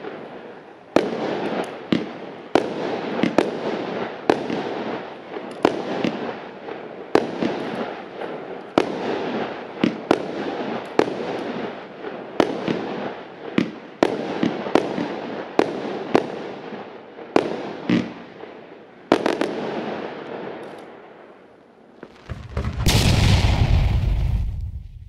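A firework battery firing shot after shot, roughly one to two sharp reports a second over a crackling haze of bursting stars, thinning out and dying away after about nineteen seconds. Near the end a loud, deep whoosh and boom comes in, an added sound effect.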